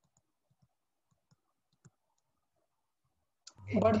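A few faint, sharp clicks of a stylus on a pen tablet while writing, spaced out in near silence. A man's voice starts near the end.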